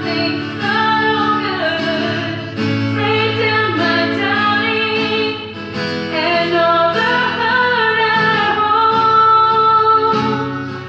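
Worship song: a woman singing over guitar accompaniment, holding one long note in the last few seconds.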